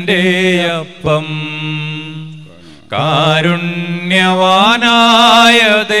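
A solo voice sings a slow Malayalam Communion hymn of the Syro-Malabar Qurbana, holding long notes with vibrato and pausing briefly about two and a half seconds in.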